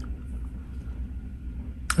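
Quiet room tone: a steady low hum with no distinct event.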